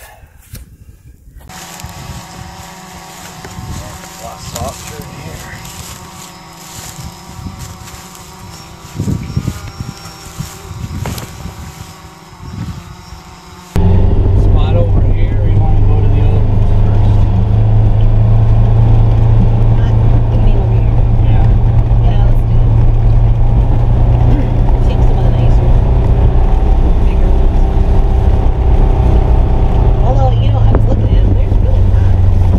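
Background music for about the first fourteen seconds, then a sudden change to the loud, steady drone of a Polaris Ranger XP 1000 Northstar UTV engine running under way, heard from inside its closed cab.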